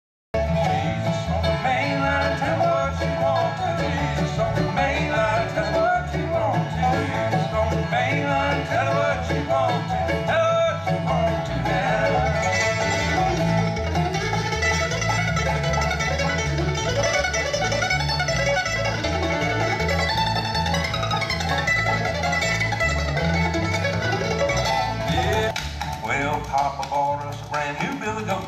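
Bluegrass string band playing an instrumental tune, the mandolin and guitars picking over a steady beat. The music drops in level near the end.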